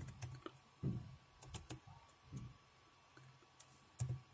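A few faint keystrokes on a computer keyboard, irregularly spaced, the strongest about a second in.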